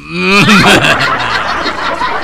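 A group of people laughing loudly, building up within the first half second after a brief voice at the start.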